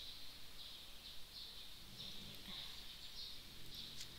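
Quiet room tone: a faint background hiss with soft, irregular high chirps coming and going throughout.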